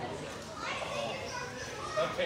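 Indistinct conversation of several people in a large hall, with higher-pitched voices coming in about half a second in.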